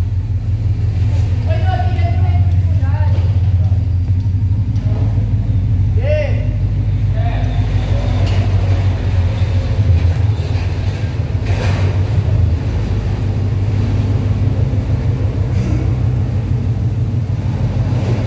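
Toyota 86's 2.0-litre flat-four engine running at idle through an aftermarket exhaust, a loud, steady low throb with voices in the background.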